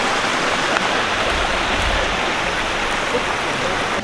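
Shallow, rocky burn with water running over and between stones, making a steady rushing, rippling sound.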